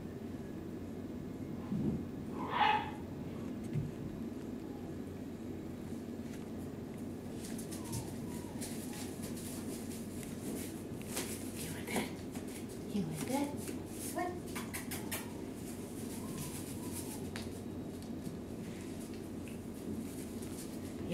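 Scattered light clicks and taps of a poodle puppy moving about a hard kitchen floor with a bird wing, over a steady low hum. One short, louder high-pitched vocal sound comes about two and a half seconds in, and a few fainter short vocal sounds follow later.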